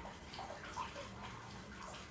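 Faint, steady sizzle of riced cauliflower, egg and shrimp frying in a pan while it is stirred.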